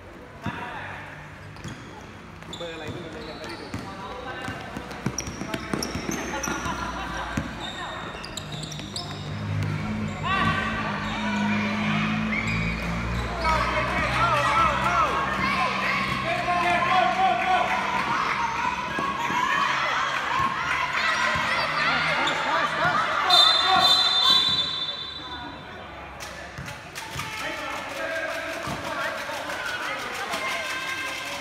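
A basketball bouncing on a hard court during a children's game, with many young voices calling and shouting over it, loudest through the middle. A brief shrill high tone sounds near the end.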